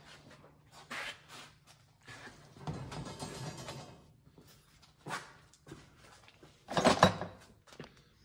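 Footsteps and shuffling in a shop, with scattered knocks and a louder thump about seven seconds in, over a faint steady low hum.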